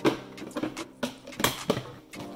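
Several sharp, irregularly spaced knocks and clatters of objects being handled.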